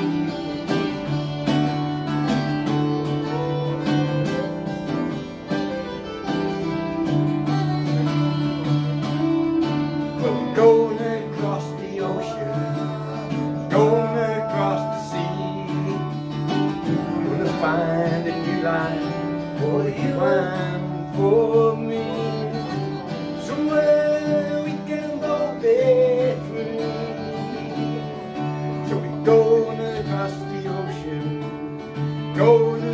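Two acoustic guitars playing a steady strummed chord accompaniment, with a wavering higher melody line coming in about a third of the way through.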